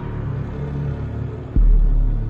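Deep cinematic boom sound effect with a slowly fading low rumble. A second boom hits suddenly about one and a half seconds in.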